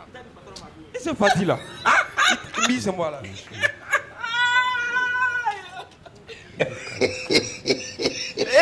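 Several people talking and laughing. About four seconds in, one voice holds a high, drawn-out note for over a second.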